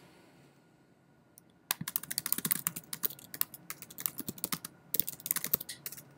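Fast typing on a computer keyboard: a quick run of key clicks that begins about two seconds in and keeps going, with one short break.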